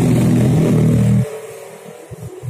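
A motor vehicle engine running steadily, loud and close, that cuts off abruptly about a second in. Only faint scattered low sounds follow.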